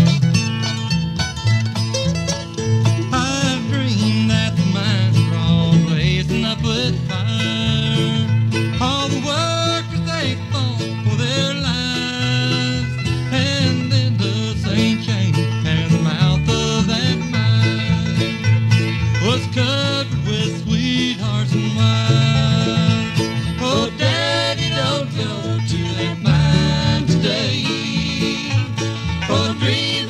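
Bluegrass band playing: banjo, mandolin, rhythm guitar and upright bass fiddle.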